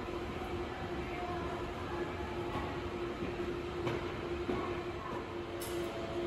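Railway station background noise: a steady low rumble with a constant mid-pitched hum.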